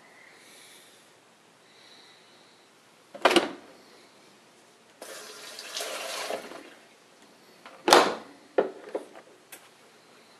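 A Bosch dishwasher door is unlatched and opened with a loud clack. A rushing noise follows for a couple of seconds from inside the open tub, then the door shuts with a second loud latch clunk, followed by three lighter clicks from the control panel buttons.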